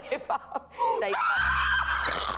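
A woman screaming: one long, high cry held from about halfway in, in distress as she forces down a revolting dish.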